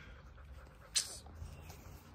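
A phone being handled: one sharp knock about a second in, over faint background noise.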